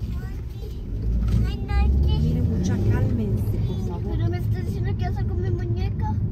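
Steady low rumble of a car cabin in slow traffic, with indistinct voices talking over it.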